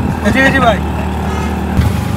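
Auto rickshaw's small engine running steadily while it drives, a low even hum heard from inside the open passenger cabin. A man's voice speaks briefly about half a second in.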